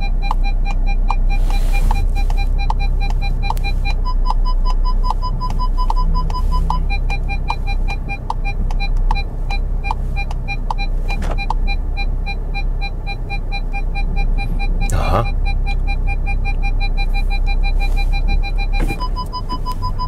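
SEAT Tarraco parking-sensor warning beeps, sounding in a rapid, steady series during a reverse parking manoeuvre and warning of nearby obstacles. The beeps jump to a slightly higher tone for a few seconds early on and again at the very end. A steady low bass layer from background music runs underneath.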